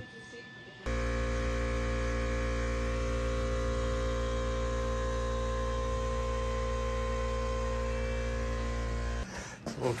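Steady electrical hum with a buzz of evenly spaced overtones, unchanging in pitch and level, starting abruptly about a second in and cutting off abruptly near the end.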